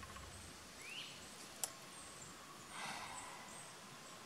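Quiet garden ambience: a faint rising bird chirp about a second in, a single sharp click a little later, and a brief soft rustle of broccoli leaves being handled near the three-second mark.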